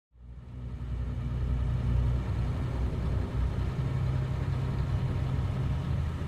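Engine and drivetrain of an old four-wheel drive running steadily while it is driven, heard from inside the cabin as a low rumble. It fades in from silence over the first second or two.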